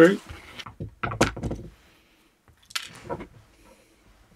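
Small screwdriver backing a screw out of a plastic airsoft magazine, with plastic parts clicking and knocking as the magazine shell is handled: one clatter about a second in and another near three seconds.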